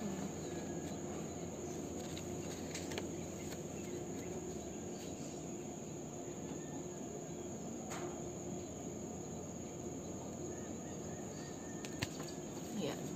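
Quiet room noise: a steady high-pitched whine over a low hum, with a faint paper-handling click about 3 seconds in and again about 8 seconds in as the booklet is held and turned.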